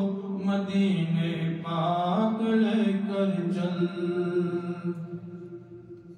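Unaccompanied male voice singing a naat, drawing out long held melodic notes that fade away near the end.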